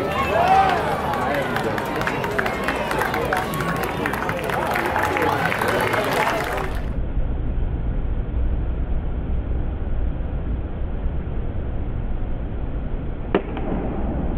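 Many voices chattering at a ballpark, then a steady low rumble of ambience, broken near the end by one sharp crack of a baseball bat meeting the pitch.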